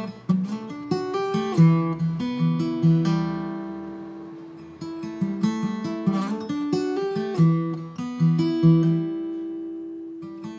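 Instrumental acoustic guitar music: picked notes and chords ringing out. About three seconds in, a chord is left to ring and fade before the picking picks up again about five seconds in.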